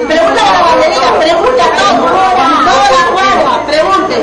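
Only speech: several people talking over one another in Spanish, loud and without a break.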